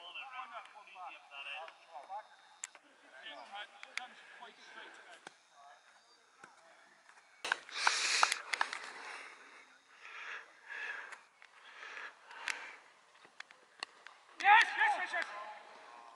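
Voices of cricketers and onlookers talking at a distance, with a brief rushing noise about eight seconds in.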